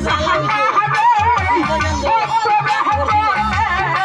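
Live Bengali bicched gaan (Baul-style folk song) music: a steady drum beat under a wavering melody line with vibrato.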